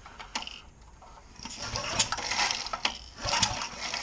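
Recoil starter rope of a Briggs & Stratton horizontal-shaft engine pulled twice by hand in the second half, the rope rasping out and the engine turning over without firing. The pulls are a rough check of compression by feel, and it has some.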